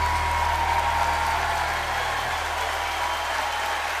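An audience applauding as the song ends, while the last held note of the music fades out under the clapping in the first second or two.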